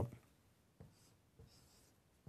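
Faint scratch and squeak of a marker pen writing on a whiteboard, with two soft taps.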